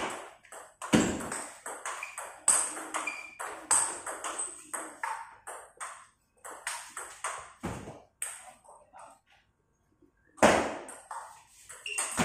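Table tennis rally: the ball knocking off the paddles and bouncing on a Stiga table in quick runs of sharp clicks. There are two short pauses, and a louder hit comes about ten and a half seconds in.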